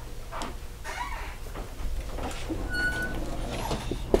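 Quiet lecture-room pause: a low steady room hum with faint scattered rustles, and a brief high squeak about three seconds in.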